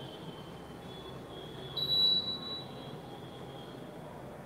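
Steady background noise with faint high wavering tones, and a brief louder high-pitched whistling tone about two seconds in.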